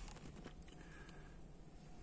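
Faint low rumble inside a car cabin moving slowly in traffic, with a few soft clicks about half a second in.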